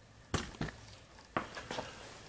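A handful of sharp knocks and clicks, three louder ones in the first second and a half and two softer ones after, from handling something near the microphone.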